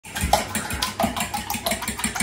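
Eggs being beaten by hand in a glass bowl for scrambled eggs. A utensil sloshes the liquid and clicks against the glass in a steady rhythm, about four strokes a second.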